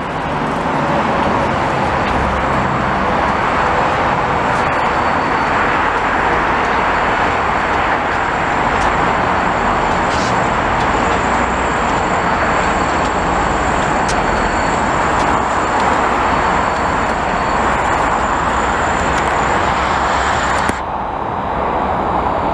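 Dense, steady highway traffic noise, the continuous hiss of tyres from cars and trucks passing beneath the overpass. About 21 seconds in, the higher hiss drops away suddenly.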